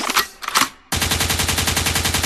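A rapid, even burst of machine-gun fire, a recorded sound effect, lasting a little over a second in the second half, after a few short, scattered sounds in the first half.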